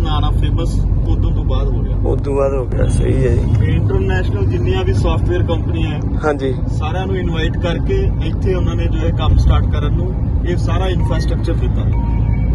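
A man talking, loudest throughout, over the steady low rumble of road and engine noise inside a moving car's cabin.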